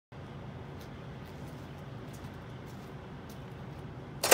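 Faint, steady low background rumble outdoors, with a handful of light ticks spread through it.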